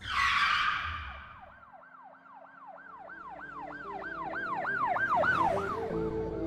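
Synthesized logo-intro sound effect: a whooshing hit, then a siren-like warbling tone that rises and falls about three times a second and grows louder, over a low held tone.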